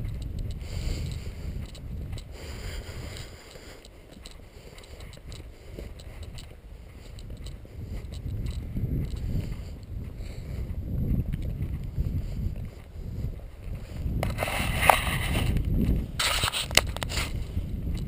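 Low, uneven rumble of wind and movement noise on the microphone while travelling along the road, with two louder rushing bursts near the end.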